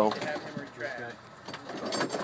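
A man's voice trailing off at the start, then faint talk and a few light clicks and knocks of rescue gear being handled.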